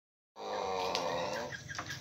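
Pelung rooster crowing: one low, drawn-out call that fades out about a second and a half in.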